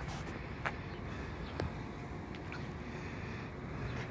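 Quiet outdoor background: a steady low rumble with a few faint ticks.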